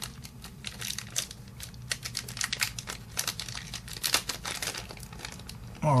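Clear plastic parts bag crinkling in the hands as it is worked open: a steady run of small, irregular crackles and clicks.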